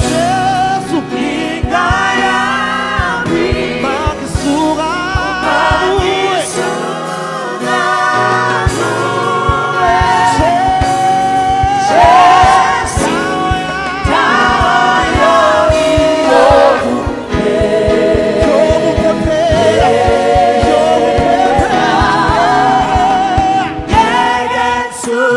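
Live gospel worship song: a group of singers on microphones with band accompaniment and a steady beat.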